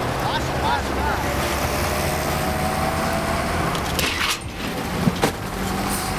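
Steady outdoor noise of road traffic at a roadside, with faint voices and a few short clicks near the end.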